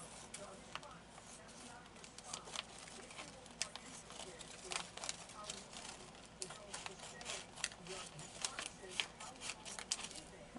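Kitchen scissors cutting through a plastic vacuum-sealer bag: a string of short, irregular snips.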